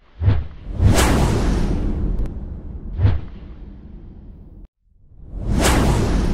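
Edited-in sound effects: a string of whooshes with deep booms, each swelling suddenly and dying away into a low rumble. The sound cuts out briefly near the end, then one more whoosh swells up.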